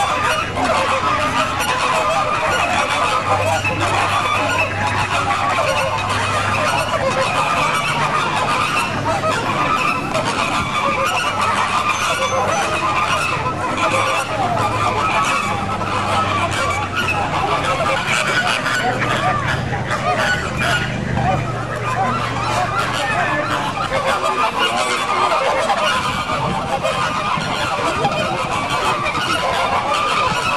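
A flock of flamingos calling all at once, many honking calls overlapping in a steady, unbroken din.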